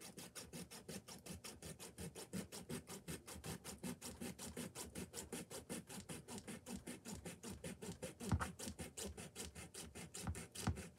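Hacksaw blade cutting through the plastic cap of a mop head in quick, even strokes, several a second, with one louder knock near the end.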